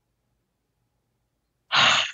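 Near silence, then near the end a single short, breathy sigh from a person.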